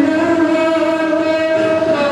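A young man's voice singing a naat into a microphone, holding one long, steady note.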